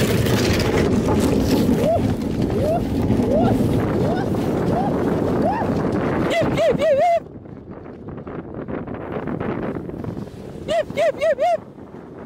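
Wooden dog sled running over snow-covered sea ice: steady scraping of the runners with wind on the microphone, which drops sharply about seven seconds in. Short rising calls sound through the noise every second or so, and there are two bursts of quick warbling calls, about six seconds in and near the end.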